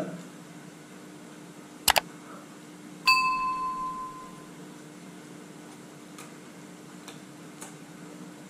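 A sharp double click, then about a second later a single bright bell ding that rings out and fades over about a second and a half: the sound effect of an on-screen subscribe-button and notification-bell animation.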